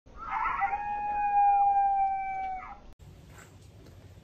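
A canine howl: one long held note, falling slightly in pitch, lasting about two seconds.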